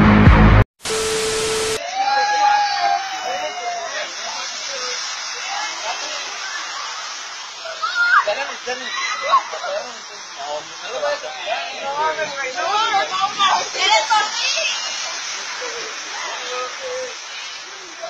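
Music cuts off and, after about a second of hiss with a steady low tone, young people's voices shout and squeal in short, high, rising and falling calls over a steady outdoor hiss, busiest in the middle of the stretch.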